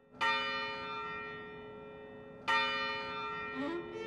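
A church bell struck twice, about two and a half seconds apart, each stroke ringing on and slowly fading.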